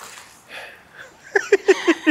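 A person laughing in a quick run of short, even bursts, starting shortly before the end.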